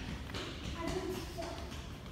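Faint voices of people talking in the background over a steady low room hum, with no loud single event.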